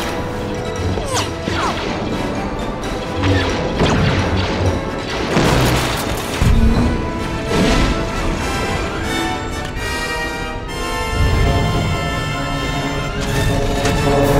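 Orchestral film score playing under science-fiction battle effects: repeated explosions and crashes, whooshing fly-bys of Republic gunships and the blasts of their laser cannons. A low rumble builds near the end.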